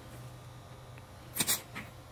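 Two quick light knocks close together, about one and a half seconds in, then a fainter one: hard tool contact as a MIG welding gun is handled on a steel welding table. A low steady hum sits underneath.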